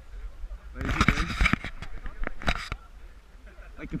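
Handling noise from a wearable action camera being adjusted: a stretch of rubbing and rustling on the microphone with a few sharp knocks, about a second in and lasting under two seconds. Faint voices are in the background.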